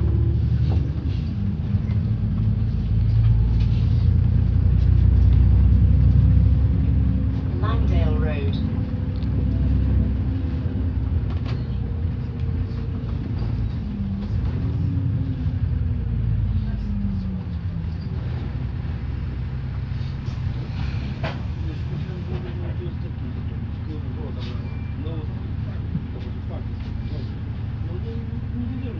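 Upper-deck interior of a moving double-decker bus: a steady low engine and road rumble, heavier in the first several seconds and easing a little later.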